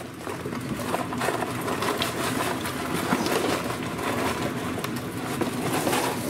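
Once-fried pork belly pieces (gratons) sizzling and crackling in hot oil in a cast-iron pot. They have just been dropped in for the final, hotter fry that makes them pop. The crackle builds over the first second, then holds as a dense, steady sizzle.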